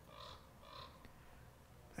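Near silence: faint outdoor background with two brief, soft sounds, about a quarter and three quarters of a second in.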